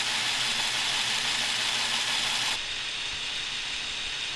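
Plastic LEGO Technic gears being turned by hand, giving a steady whir as the crane's telescopic boom is driven out. The whir cuts off suddenly about two and a half seconds in, and a quieter steady hiss remains.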